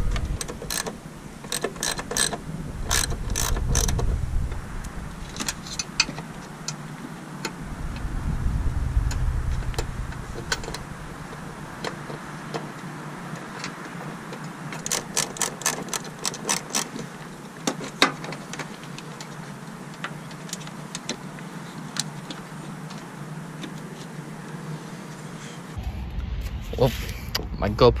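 Plastic zip tie being drawn tight around car wiring, its ratchet clicking in quick runs, with small handling knocks in between.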